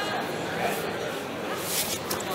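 Indistinct background chatter of voices in a large, echoing gymnasium, with a brief high hiss near the end.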